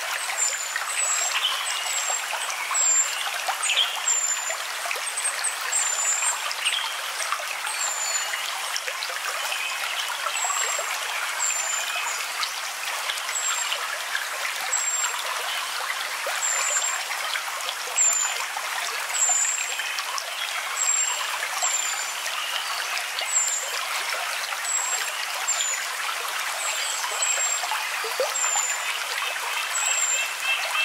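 A stream of running water trickling steadily, with short, high, falling chirps repeating every second or so.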